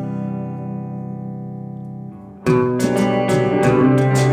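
Electric guitar: a held chord rings on and slowly fades. A little past halfway, a louder rhythmic picked guitar part comes in suddenly.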